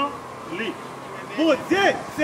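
A person speaking in two short phrases, one about half a second in and a longer one near the end, with a faint steady whine running underneath.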